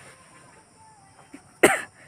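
A single short, sharp burst of breath from a person, like a cough, about one and a half seconds in, after a quiet stretch.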